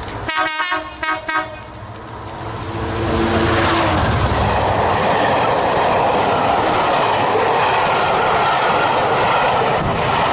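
Class 67 diesel locomotive's horn sounding a quick run of short blasts in the first second and a half, then the locomotive passing at speed under power. The Pullman coaches follow with a loud, steady rush of wheels on the rails.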